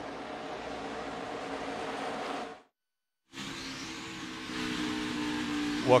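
Race-car engines on the track, heard as a steady drone, cut off abruptly about two and a half seconds in. After a short silence, the in-car sound of a Ford stock car comes in, its engine running at a steady speed and growing slightly louder near the end.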